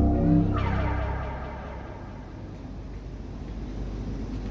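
Show soundtrack over the theatre's sound system: low sustained music notes stop about half a second in, followed by a falling whoosh sound effect that fades into a low rumble.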